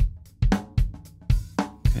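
Multitrack drum-kit recording played back during mixing, with the tom track soloed: a steady beat of drum hits, about three to four a second.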